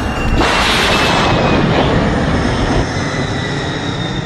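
A speed sound effect: a loud rushing noise like a jet or fast train going by. It swells about half a second in and then holds, with a faint whistle that slowly falls in pitch.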